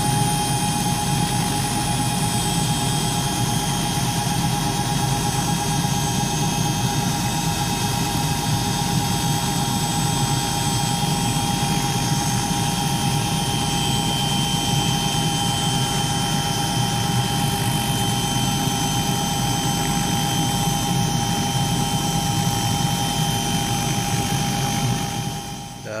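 Small helicopter running on the ground, its engine and rotor making a steady drone with a constant high whine. The sound holds unchanged and then drops away shortly before the end.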